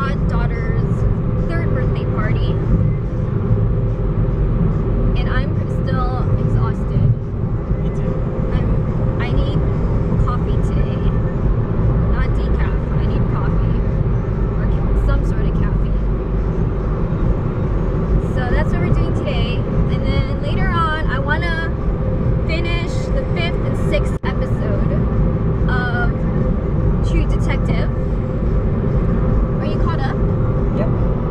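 Steady road and engine noise inside a moving car's cabin, a loud low rumble with a steady hum, while a person talks over it at times.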